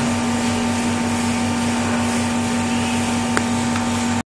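Steady background noise in an office: an even hiss with a constant low hum that does not change.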